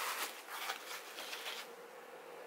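Crinkly rustling of brown packing paper and foam wrap sheets as the plates are set down and arranged on them, in a few quick flurries that die away near the end.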